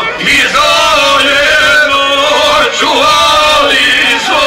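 A man sings an izvorna folk song live into a microphone through a PA, with violin accompaniment.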